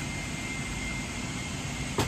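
Cabin noise inside a Boeing 777-300ER airliner: an even, steady rushing noise with a thin steady high tone above it.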